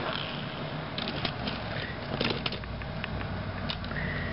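Light, scattered clicks and taps of a plastic Power Rangers Samurai Sharkzord toy being picked up and handled.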